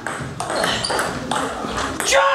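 Table tennis ball clicking off bats and the table during a fast rally: a few sharp knocks about half a second apart.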